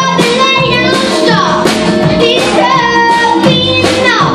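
A young girl singing lead live, backed by an acoustic band with guitars and upright bass. Her voice holds notes and slides between them.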